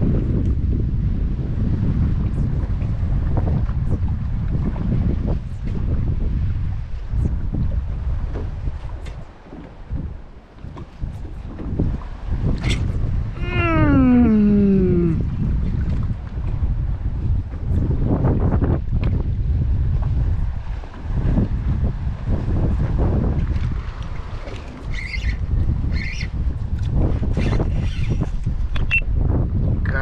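Wind buffeting the microphone, a steady low rumble in gusts, with one drawn-out cry that falls in pitch about halfway through.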